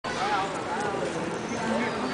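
Several people talking at once in the background, with no clear words.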